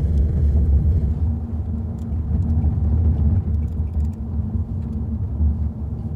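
Steady low rumble of road and engine noise inside a moving car's cabin, with a few faint clicks.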